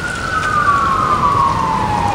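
Emergency vehicle siren wailing: one long tone slowly falling in pitch, over the steady rush of fast river water.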